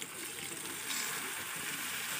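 Water poured in a steady stream into a kadai of frying vegetables and spices, splashing into the hot pan.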